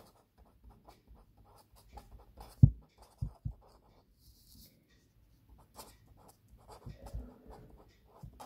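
Marker pen writing on paper: a run of short scratchy strokes as letters are formed, with a few sharp knocks a little before the middle, the first the loudest.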